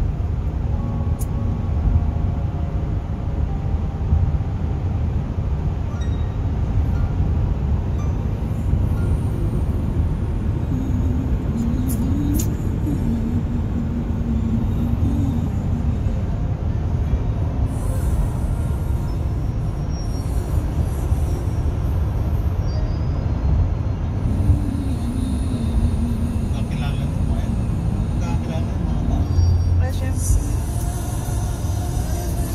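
Steady road and engine noise inside the cabin of a car driving at road speed, a constant low rumble.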